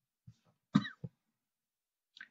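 A man's short cough: one brief burst about three quarters of a second in, with fainter throat sounds just before and after.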